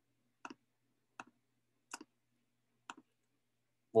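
Four separate clicks at a computer, spaced unevenly about a second apart, each a quick press-and-release double tick. A man's voice starts speaking at the very end.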